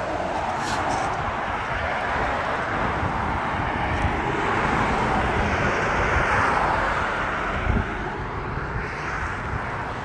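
Road traffic passing: a steady rush of tyre and engine noise that swells to its loudest about six seconds in as a car goes by, then eases.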